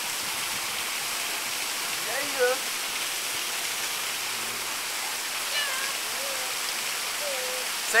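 Steady rush of running water from a mini-golf water feature, with faint voices briefly about two seconds in and again near the end.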